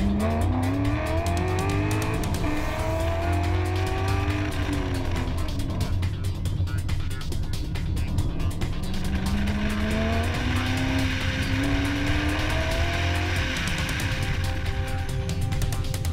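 Corvette V8 engine pulling hard under full-throttle acceleration, its pitch rising, dropping about four seconds in, then rising again through the later part, with tyre squeal over the second climb.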